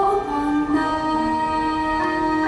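Live music: a woman's sung note, bending briefly at first and then held, over a string ensemble accompaniment.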